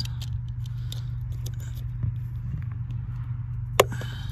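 Box cutter blade scraping and cutting into a rubber firewall grommet, with scattered small clicks and a sharper click near the end, over a steady low hum.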